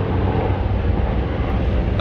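Helicopter flying over, a steady low rotor sound.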